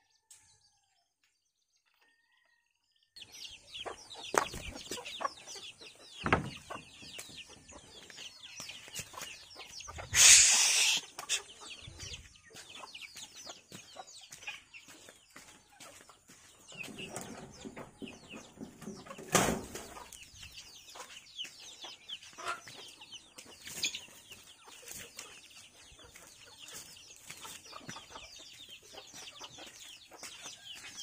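Domestic chickens clucking and calling, starting about three seconds in, with scattered sharp knocks and a loud rustling burst of wing flapping about ten seconds in.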